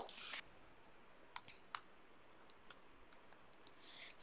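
Faint clicks of a computer keyboard and mouse: two clearer clicks about a second and a half in, then a short run of lighter keystrokes as a word is typed.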